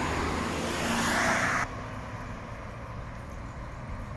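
A car passing close by on the road, its tyre and engine noise swelling and then cutting off abruptly about one and a half seconds in. A quieter, steady low rumble of traffic follows.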